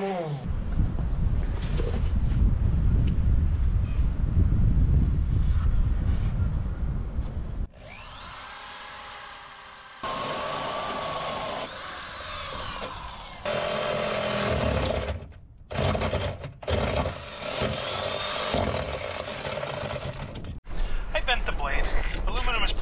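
A random orbital sander runs steadily on the aluminium deck for about seven seconds. After several abrupt cuts, a cordless drill runs in short whining bursts.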